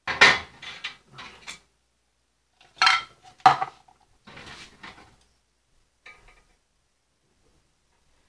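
A metal utensil clinking and scraping against a dough can and a metal baking pan, in several short bursts of clatter over the first five seconds and a fainter one about six seconds in.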